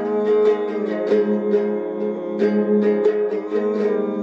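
Nylon-string classical guitar played solo, a run of plucked notes and chords ringing over one another in an instrumental passage.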